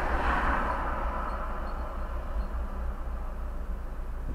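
Road traffic heard from inside a stationary car's cabin: a steady low rumble, with a passing vehicle's noise swelling and fading in the first second or so.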